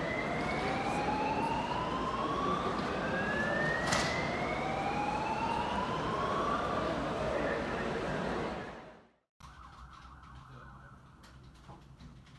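Emergency vehicle siren wailing, its pitch rising slowly and dropping back about every three seconds, over street noise. It fades out about nine seconds in, leaving only a faint, much quieter background.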